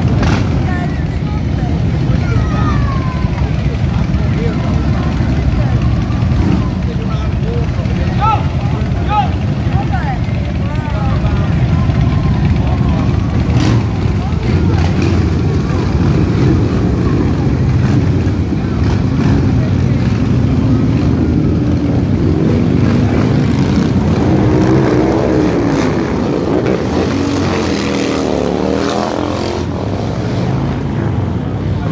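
A group of heavy cruiser motorcycles running together with a deep, steady engine rumble as the bikes pull away from the junction and ride past one after another, with rising and falling engine notes near the end.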